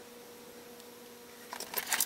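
Quiet room tone, then near the end a quick run of light clicks and taps as craft tools are handled on the desk.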